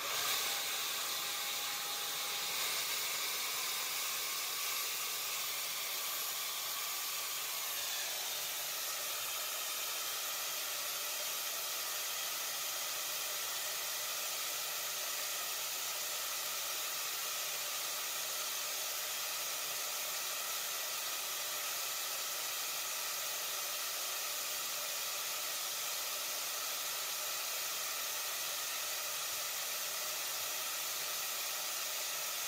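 HausBots HB1 wall-climbing robot's suction fan starting up suddenly and then running steadily as an even rush of air, with faint tones in it that shift about eight seconds in. The fan's suction holds the robot to the wet steel wall while weights hang from it.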